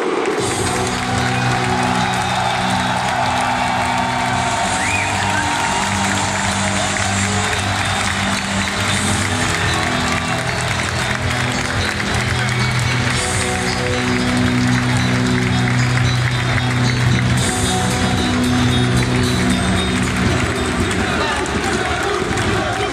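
Music playing over a stadium's loudspeakers with long, steady bass notes, over a large crowd cheering and applauding.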